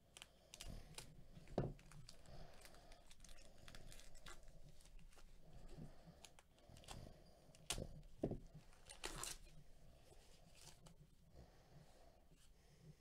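Foil wrapper of a Topps Gypsy Queen baseball card pack being torn open and crinkled by hand, an irregular run of sharp rips and crackles. The crackles are loudest near the start and again a little past the middle.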